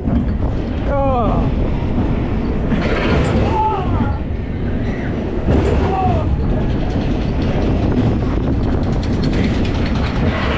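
Spinning roller coaster car running along a steel track: a steady, loud rumble of wheels on the rails. Short whoops from the riders come a few times.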